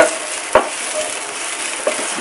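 Chopped onions sizzling in hot oil in a non-stick frying pan as a wooden spatula stirs them, with two short knocks, about half a second in and near the end.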